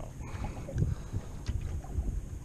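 Wind rumbling on the microphone and water against a small boat's hull, with a couple of light knocks from handling.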